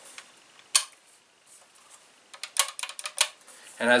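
Clicks from handling a Cyma CM.702 spring-powered airsoft bolt-action sniper rifle: one sharp click a little under a second in, then a quick run of lighter clicks about two and a half seconds in.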